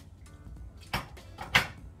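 Two short knocks, the second louder and sharper, as a bowl of pasta with a fork in it is set down on a surface.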